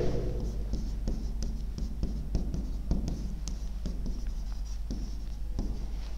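A stylus writing by hand on an interactive touchscreen whiteboard: a run of short, irregular taps and strokes.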